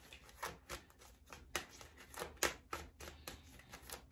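Tarot deck being shuffled by hand: a run of light card slaps and clicks, about three a second.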